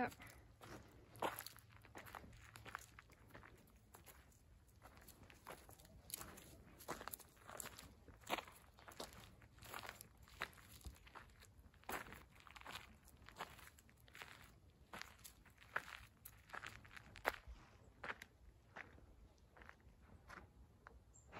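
Footsteps of a person walking at a steady pace on a dirt path strewn with gravel and dry leaves, a soft crunch roughly every half second.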